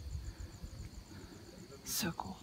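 Low rumbling handling noise on a handheld camera's microphone as it is carried up in the dark, over a steady, fast, high chirping of insects. Near the end comes a sharp noise and then a brief voice-like sound.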